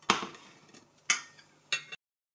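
Three sharp knocks of hard objects, the second about a second after the first and the third half a second later, each dying away quickly; the sound cuts off suddenly just before the end.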